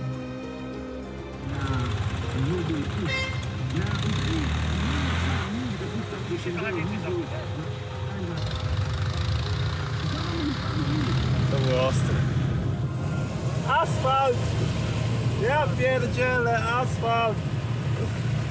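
Background music and voices over the steady running of a Fiat 126p's small air-cooled two-cylinder engine with road noise, the car sound coming up about a second and a half in.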